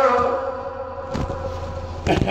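A male reciter's sung note from a Pashto nauha comes through the hall's PA and fades away in its echo. A low electrical hum stays underneath, and a couple of dull thumps come about a second in.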